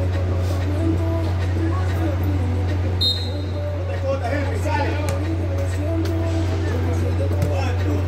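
Distant voices of players and onlookers around a small football pitch, with faint music, over a steady low hum that runs throughout.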